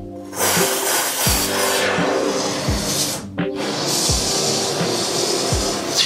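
Aerosol can of expanding spray foam hissing as foam is forced through its straw into a hole in a metal wall rib. It sprays in two long bursts with a short break about three and a half seconds in. A background music beat runs underneath.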